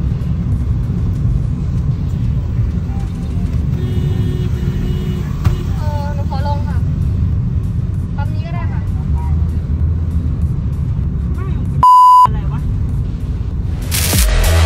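Steady low road and engine rumble inside a moving taxi's cabin, with faint bits of voice. Near the end a short, loud single-pitch censor bleep briefly replaces all the cabin sound.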